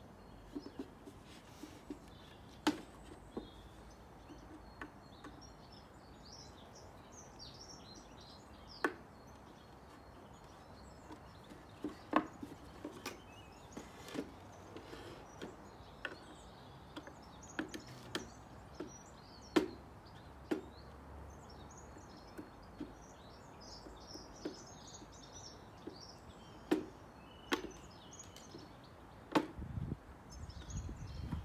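Irregular sharp knocks and clicks of a screwdriver and wooden bird-box parts being handled and fitted on a workbench, about a dozen spread unevenly over the time. Small birds twitter faintly in the background.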